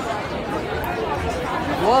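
Chatter of many diners talking at once at crowded outdoor terrace tables, with one man's voice coming in louder near the end.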